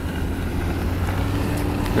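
Car running and rolling slowly, heard inside the cabin: a steady low rumble of engine and road noise.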